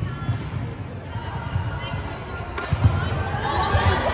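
Repeated low thuds on a wooden sports-hall floor, the strongest about three quarters of the way in, with voices echoing in the hall.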